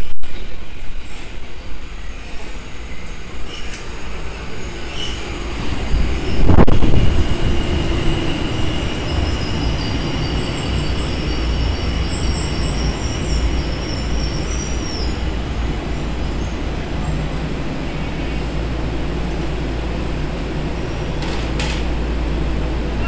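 Tokyo Metro Ginza Line 1000-series train arriving at an underground platform and braking to a stop. Its rumble swells sharply about six seconds in, a high, wavering squeal runs for several seconds as it slows, and it settles into a steady low rumble.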